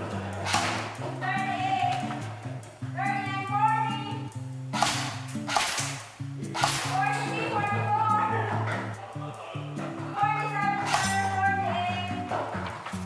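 Background music: a song with a singing voice over a stepping bass line and regular percussion hits.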